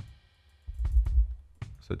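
A sampled acoustic kick drum from the Studio Drummer virtual drum kit, previewed as a single deep thud about a second in.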